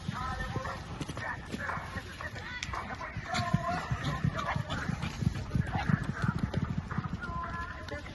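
Horse galloping on soft arena dirt in a barrel race, its hoofbeats coming as repeated dull thuds that run thickest in the second half. People's voices call out over the hoofbeats at times.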